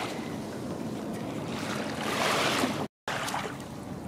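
Small waves washing at the edge of a sandy shore, with wind on the microphone; the water noise swells about two seconds in, then the sound breaks off for a moment about three seconds in before the lapping resumes more quietly.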